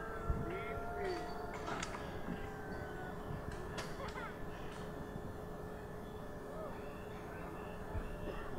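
Faint, indistinct distant voices over steady outdoor background noise, with a thin steady hum and a few light clicks.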